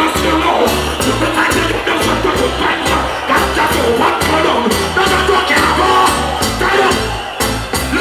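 Live reggae band playing with a steady beat, drums and bass guitar, with a vocalist chanting "go go go" into the microphone over it.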